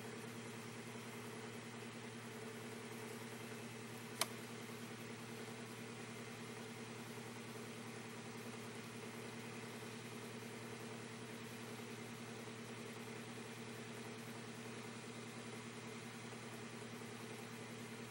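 A steady low background hum, with a single sharp click about four seconds in.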